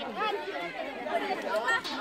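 Several people talking at once: overlapping conversational chatter in Bengali, with no other distinct sound.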